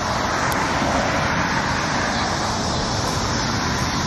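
Steady street traffic noise: an even rush of road noise from vehicles.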